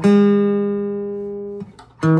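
Nylon-string classical guitar: one chord is struck right at the start and rings, slowly fading. It is damped about a second and a half in, leaving a brief near-gap before the next chord.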